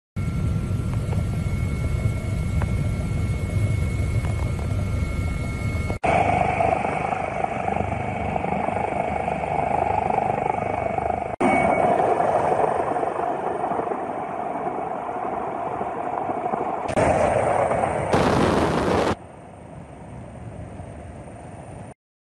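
Steady helicopter noise heard from on board, a dense rumble with a faint high whine, in several clips cut together that change suddenly about 6, 11, 17 and 19 seconds in; the last few seconds are quieter.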